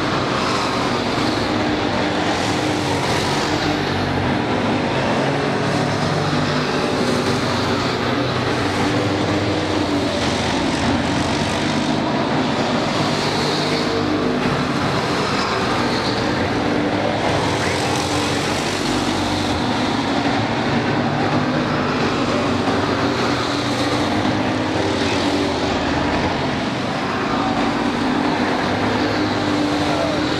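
Several street stock race cars' engines running hard at racing speed, a steady, continuous engine noise with pitch that wavers as cars pass and lift for the turns.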